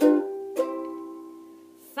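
Ukulele strummed twice, a chord at the start and a lighter one about half a second in, then left to ring and fade away as the song's closing chord.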